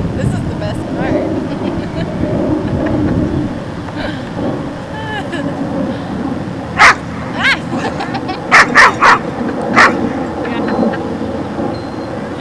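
A dog barking, a string of about six sharp barks in quick succession a little past halfway, with a couple of thin high whines earlier.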